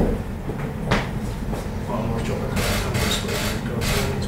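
Two sharp footsteps of hard-soled shoes on a wooden floor in the first second, then several short hissing rustles near the end.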